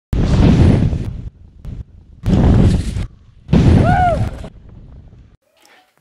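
Intro sound effects: three loud bursts of rushing noise, each starting suddenly and fading over about a second, the third carrying a brief rising-then-falling tone.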